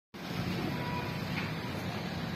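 Steady low mechanical hum, even throughout, with no distinct knocks or clicks standing out.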